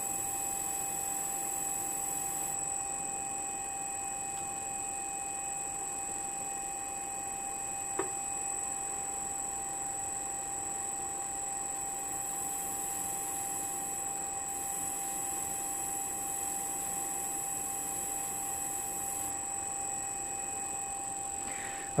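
ADEMS GMT II sharpening machine running steadily with a constant whine while manicure nippers are held against its spinning polishing wheel to polish their front faces. A single short click about eight seconds in.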